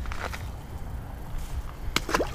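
Steady low wind rumble on the microphone, then a sharp splash near the end as a small largemouth bass is tossed back into the pond and hits the water.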